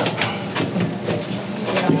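Irregular clicks and rattles of electrical wiring and a small plastic controller being pulled through and handled against a sheet-metal control housing, over a steady noisy background.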